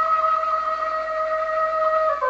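Shibabeh, the Levantine end-blown flute, holding one long steady note.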